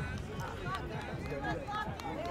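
Several people's voices overlapping across an open field, chatter and calls with no clear words.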